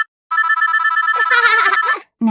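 Mobile phone ringing with a fast, trilling electronic ringtone. It breaks off for a moment right at the start, then rings on.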